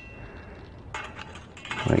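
Short metal clicks and scrapes as a BRS-24 heat diffuser is worked onto the burner of an MSR Whisperlite stove, in a cluster about a second in and another near the end.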